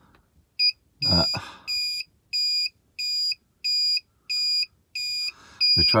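A campervan's electrical-system alarm beeping in an even, high-pitched rhythm, about three beeps every two seconds. It is the low-power warning of a leisure battery that has run flat.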